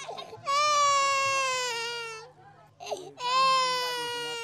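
A baby crying: two long wails of about two seconds each, sliding slightly down in pitch, with a short gasping breath between them.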